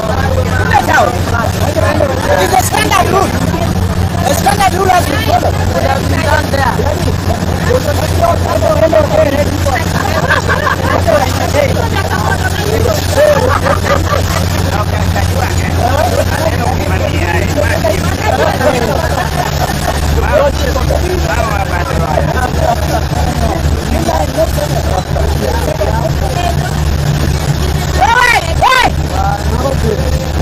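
A motorboat engine running steadily under a babble of many voices shouting and calling, with louder shouts near the end.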